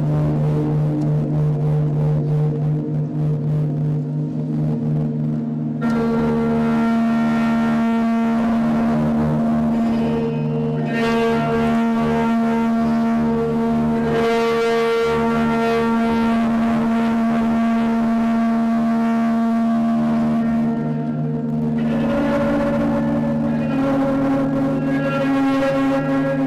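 Electric guitar bowed with a violin bow through an amplifier: a loud, sustained drone of several held tones. A brighter layer of many overtones comes in about six seconds in, and the lower tones shift in pitch near the end.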